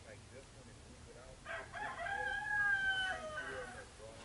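A rooster crowing once, starting about a second and a half in and lasting about two seconds, its held note falling away at the end.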